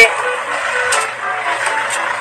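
Indistinct voices talking quietly over a steady background hum.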